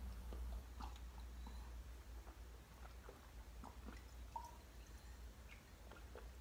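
Faint sounds of a man drinking from a glass to wash down tablets: soft gulps, swallows and small mouth clicks, over a low steady hum.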